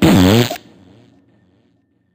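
The last sound of a hip hop diss track: one short, loud burst with a falling pitch, about half a second long, that fades away within about a second as the song ends.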